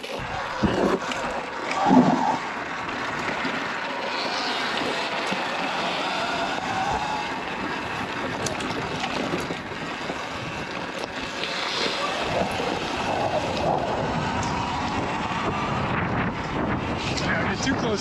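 Wind rushing over a helmet-mounted camera with tyre noise from a Sur-Ron electric dirt bike riding over gravel.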